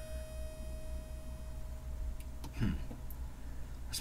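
Waldorf Blofeld synthesizer holding a single faint steady tone that stops about two and a half seconds in, over a low steady hum. A short falling sound follows near the end.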